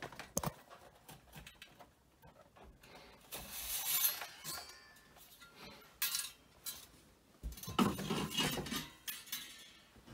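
Metal clinking and rattling as knitting-machine weights and the cast-on comb are taken off the work between the beds, in a few short spells of clatter.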